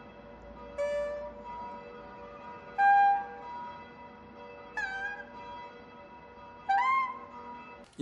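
Saxophone playing four short, separate held notes about two seconds apart, each bending in pitch as it starts, over a faint steady drone.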